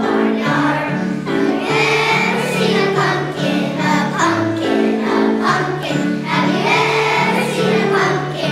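A large choir of young children, first and second graders, singing a song together.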